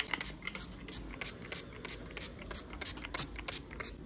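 A quick, even run of light ticking clicks, about four or five a second, over a faint low hum.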